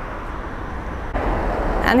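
Road traffic on a busy multi-lane road: a steady rumble of passing cars that gets suddenly louder a little over a second in.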